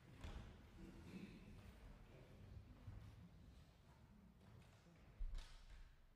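Near silence: faint room tone with a few soft knocks, and one brief thump about five seconds in.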